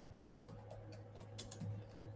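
Faint typing on a computer keyboard: a handful of scattered keystrokes, heard over a low steady hum.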